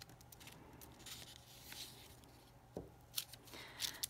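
Faint rubbing and scraping of a glue stick on construction paper as woven paper tabs are glued down, with a couple of light taps near the end.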